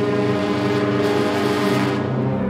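Symphony orchestra holding a loud, sustained chord, with the brass prominent.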